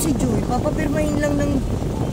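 A person's voice in one drawn-out sound that falls and then holds for about a second. Beneath it is the steady low rumble of traffic, heard from inside the cabin of a car waiting at a light.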